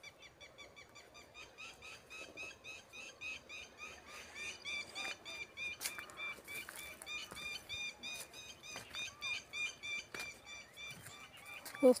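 Birds chirping: a steady stream of short, high calls, about three or four a second, fairly faint.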